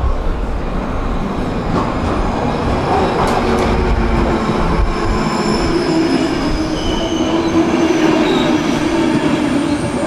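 Passenger train coaches rolling along a station platform: a steady rumble of wheels on rail, with faint high-pitched wheel squeal in the second half.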